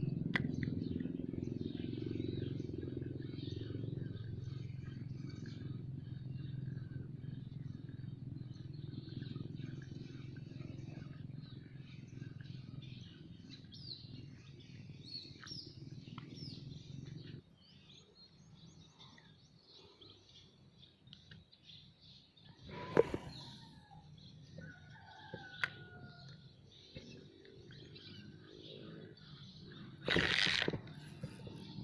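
Birds chirping and calling in short notes, over a low steady hum that stops abruptly a little past halfway. There is a sharp click about three quarters of the way through.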